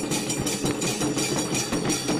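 Rhythmic percussion beating about four strokes a second, with a steady high metallic ringing over it.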